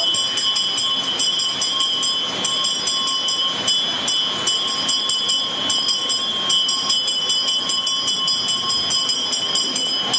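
Ritual bells ringing continuously, their metallic tones held steady under repeated irregular clanks.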